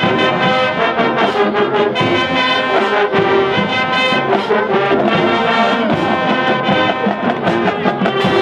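High school marching band playing: massed brass (trombones, trumpets, sousaphones) over a drumline, loud and steady with a regular beat.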